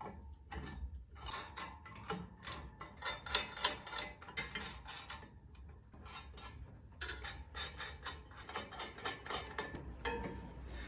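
Carriage bolts and nuts being fitted by hand to the steel bearing flanges and selector plate of a disc harrow: a run of small, irregular metal clicks and rattles as washers and nuts are turned on the bolt threads, easing off for a moment about halfway through, with one sharper click a little past three seconds.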